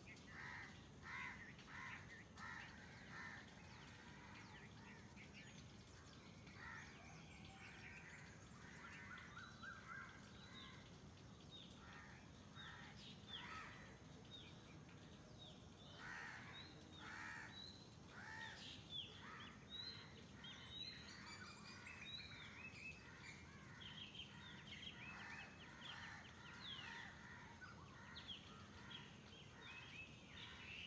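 Faint outdoor ambience of many birds calling, short chirps and calls overlapping one another throughout, over a low steady background hum.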